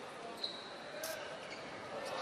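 Handball play on an indoor court: the ball bouncing on the floor and a short high squeak, over the steady background of a large hall with a crowd.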